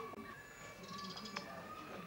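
Garden birds calling, with a short, rapid, very high trill about a second in over a faint steady high tone.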